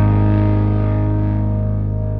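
A distorted electric guitar chord held and slowly fading away as a pop-punk song ends.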